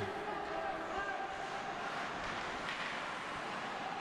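Steady ice hockey arena ambience: a low, even murmur of the crowd during play.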